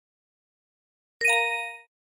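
A single bright electronic chime, a ding of several bell-like tones at once, starting about a second in and fading out within about two-thirds of a second: a slide-transition sound effect marking the next flashcard.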